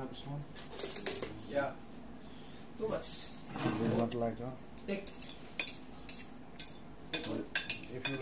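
Metal fork clinking and scraping against a ceramic plate as noodles are twirled up and eaten, with a run of sharp clinks in the second half.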